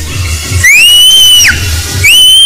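Aerobics workout music with a steady bass beat, and a high whistle starting about half a second in that slides up, holds for about a second and slides down.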